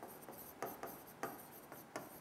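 Faint hand-writing on an interactive display screen: soft strokes and a few light taps as a word is written.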